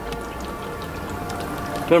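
Steady fizzing hiss with faint crackles from a PVC hydrogen generator in which magnesium metal is dissolving in dilute hydrochloric acid, giving off hydrogen gas.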